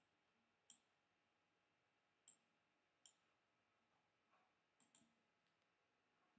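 About five faint, sharp computer mouse clicks, spaced irregularly over a few seconds in near silence, as a profile photo is cropped and uploaded on screen.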